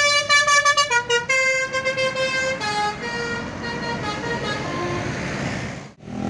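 Multi-tone 'telolet' air horn of a passing coach bus playing a short tune of several held notes that step up and down in pitch, then growing fainter over road traffic noise. The sound dips out sharply at the very end.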